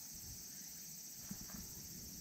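Steady high-pitched chorus of insects, with faint low rustling and a couple of small knocks about a second and a half in.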